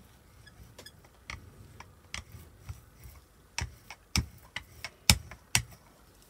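Rubber brayer rolled back and forth over a heavy layer of old acrylic paint on a gelli plate, giving irregular clicks and taps, with a few sharper ones in the second half.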